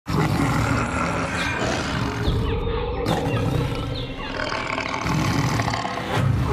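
A lion roaring, a dramatic sound effect, loud and deep throughout.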